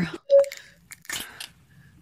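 Close-miked ASMR eating: a short, sharp pop about a third of a second in, then a few crisp bites and crunches around a second in.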